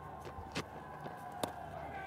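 Faint cricket-ground ambience during a delivery: a steady background tone with a few sharp knocks, the loudest one late on.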